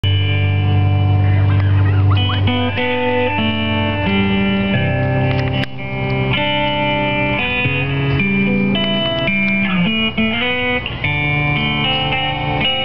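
Guitar playing an instrumental introduction to a song: a line of sustained notes changing about every half second over held low notes.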